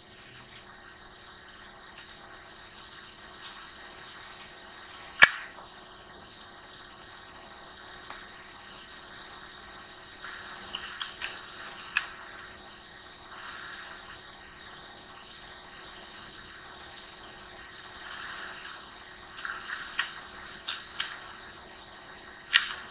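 Quiet room tone with a faint steady hum, broken by a few sharp single clicks, the loudest about five seconds in and several close together near the end, and a few brief soft rustles.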